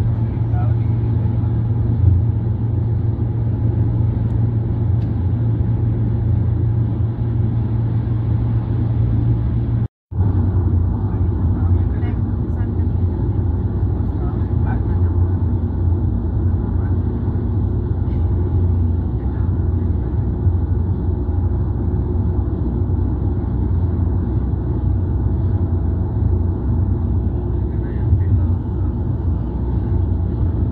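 Road noise inside a car cabin at highway speed: a steady low rumble of tyres and engine. The sound cuts out for a moment about ten seconds in.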